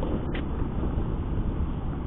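Steady rush of riding noise from a Honda Beat FI scooter on a gravel road: wind on the microphone mixed with tyre and engine noise, with no clear engine note standing out.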